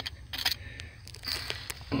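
A few short scrapes and clicks of gravel and small stones as a hand digs into a gravelly bank to free a fossil shark tooth.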